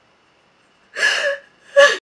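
A woman's two loud, sharp sobbing gasps, one about a second in and a shorter one near the end.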